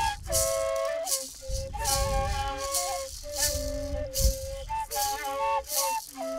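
Two long indigenous duct flutes (gaitas) playing a melody of held notes that step up and down, over a gourd maraca shaken in a steady beat.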